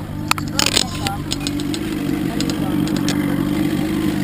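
Johnson V4 two-stroke outboard motor running steadily. A few sharp knocks and clicks come in the first second, and lighter ticks follow.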